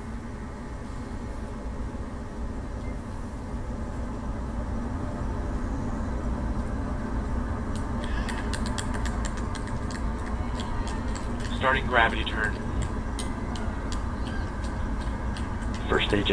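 Falcon 9 first stage, its nine Merlin 1C engines at full thrust during the climb after liftoff: a steady low rumble that slowly grows louder, with scattered sharp clicks in the second half.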